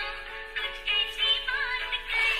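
A song with a singing voice played through a small, unmodified 3-inch 4-ohm 20-watt speaker driver. The sound is thin, with little bass and no high treble.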